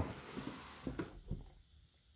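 Cardboard boot-box lid being lifted off the box: a soft scraping rustle for about a second, then two light taps.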